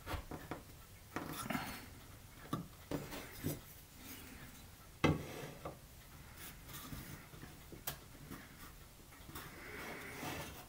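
Faint handling sounds of woodwork on a bench: light knocks, clicks and rubbing as a small wooden peg is worked in its glued base and a small square is set against it, with one sharper click about five seconds in.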